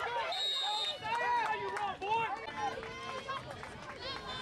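Several voices calling and shouting over one another, with no clear words. About half a second in, a short referee's whistle blast sounds as the tackle ends the play.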